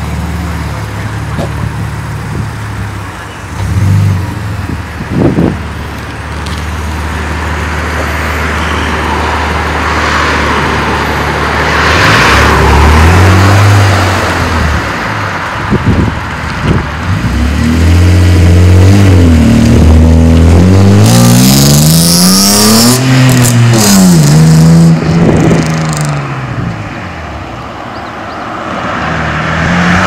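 BMW E39 5 Series sedan's engine idling steadily, then pulling away: about twelve seconds in the engine note climbs and drops several times as the car accelerates off through the gears.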